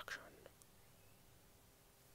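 Near silence: faint room tone, after a short breathy sound from the speaker in the first half-second.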